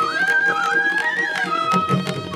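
Carnatic ensemble: a bamboo flute plays an ornamented, gliding melody that climbs about a second in and then steps back down. A violin follows underneath, with drum strokes from the mridangam and tabla over a steady tanpura drone.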